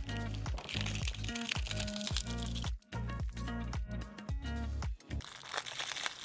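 Background music with a deep, repeating bass beat over the crinkling and crackling of iridescent cellophane being trimmed from the edge of a cured resin tray with a blade. The music stops about five seconds in, leaving only the cellophane crinkling.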